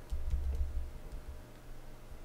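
A few quick computer-keyboard key clicks as a word is typed, in the first half, over a low rumble that fades out about a second and a half in and a faint steady hum.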